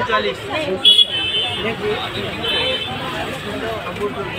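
People talking at a busy shop counter, several voices over one another, with street noise in the background and a couple of brief high tones.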